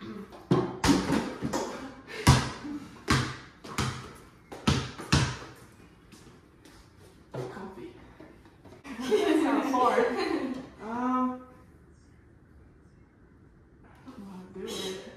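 A ball bouncing on a hard wooden floor after a throw at a mini basketball hoop, about eight irregular bounces over the first five seconds. A voice follows about nine seconds in.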